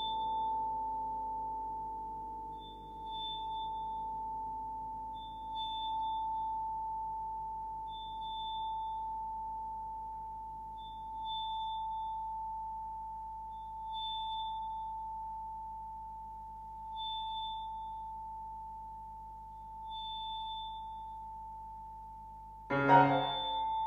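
A single high metallic tone from a small bell-like metal percussion instrument, struck again about every three seconds so that it swells and then slowly fades each time while the note keeps ringing between strikes. Lower tones die away underneath during the first few seconds.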